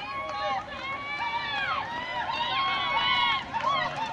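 Several high-pitched voices shouting and calling out at once, overlapping without a break: spectators yelling encouragement to runners in a track race.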